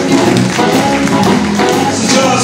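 Live electric blues band playing: electric guitars, bass and drum kit with sharp drum hits, led by amplified harmonica played into a vocal microphone.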